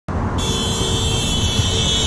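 Road traffic rumble, with a vehicle horn held steady for about two seconds starting about half a second in.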